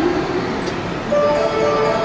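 Railway station platform melody played over the loudspeakers: a few held, chime-like electronic notes come in about a second in, over the steady background noise of a station platform.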